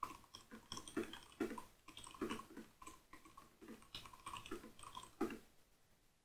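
Typing on a computer keyboard: a faint run of quick, irregular key clicks that stops about five seconds in.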